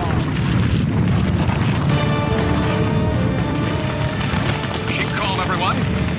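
Low, continuous rumbling cartoon sound effect of a building shaking and giving way. Dramatic score music with held chords comes in over it about two seconds in.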